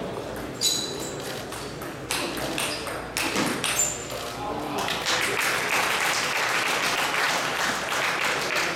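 Table tennis rally: the celluloid ball clicks off paddles and table about every half second. About five seconds in, the rally ends and spectators applaud.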